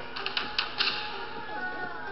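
Soundtrack of an animated film played through a mobile phone's small loudspeaker: music with a quick run of clicks and taps in the first second.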